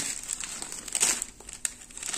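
Rustling and crinkling of a soft cotton saree as it is handled and unfolded by hand, in uneven rustles with sharper ones at the start and about a second in.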